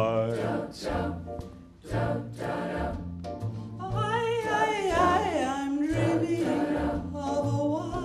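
Choir singing, with a young male soloist singing into a handheld microphone over the ensemble.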